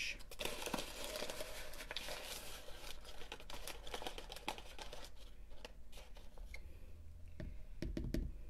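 Paper and cardboard crinkling as a box of Argo cornstarch is worked open by hand and its paper inner liner pulled back, for about the first five seconds. After that the rustling dies down to a few light clicks and taps as a plastic measuring spoon goes into the box.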